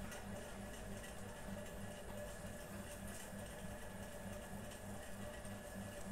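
Quiet room tone: a low steady hum with a faint throb that repeats about three times a second.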